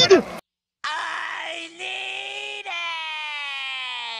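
SpongeBob SquarePants cartoon clip: SpongeBob's long, drawn-out wailing cry, breaking twice and then sliding slowly down in pitch. A short laugh is heard just before it.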